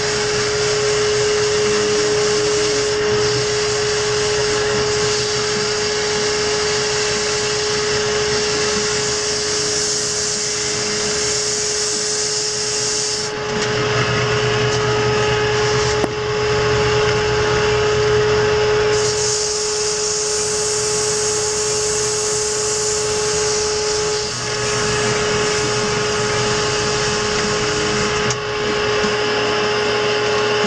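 Wood lathe running with a steady motor hum while a turning tool cuts the spinning wooden baseball bat blank, making a loud hiss of shaving wood. The cutting hiss stops for several seconds about halfway through, leaving the lathe's hum, then starts again.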